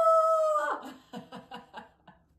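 A woman's long, high-pitched drawn-out "ooh" cry, falling slightly in pitch, that breaks off about three-quarters of a second in into a quick run of laughter.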